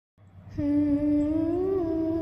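A singer humming one long held note, the opening of a naat. It starts about half a second in and rises slightly in pitch near the end.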